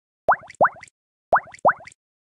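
Cartoon pop sound effects: four quick bloops, each rising sharply in pitch, in two pairs about a second apart.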